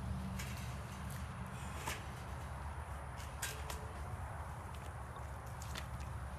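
Scattered small clicks and knocks, about half a dozen, over a steady low rumble, as wet water lily stems and leaves are shifted about in a plastic pedal boat.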